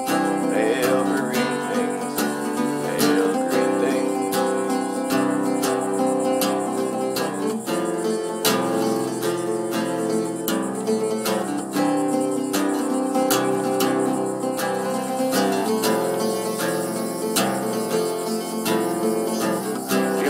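Mandocello, a large mandolin tuned C-G-D-A like a cello, strummed in an instrumental passage with no singing. There are steady picked strokes, and the chords change every few seconds.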